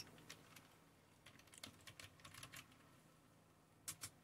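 Faint computer keyboard keystrokes: a short, uneven run of soft clicks as a word is typed, with a sharper click just before the end.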